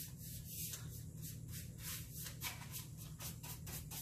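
Paintbrush strokes scratching back and forth on a wooden headboard as chalk paint is brushed on, a quick rhythmic brushing of about four or five strokes a second.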